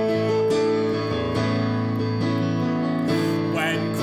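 Violin and piano playing a slow hymn interlude: long bowed violin notes over sustained piano chords. Near the end the violin drops out and a voice with wide vibrato comes in.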